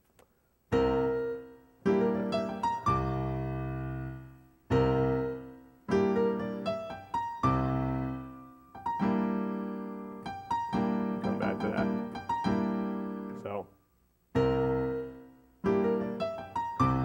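Piano played slowly, one full jazz chord or short figure at a time, each struck and left to ring and fade before the next, in a stride-piano passage. There is a short break near the end before the playing picks up again.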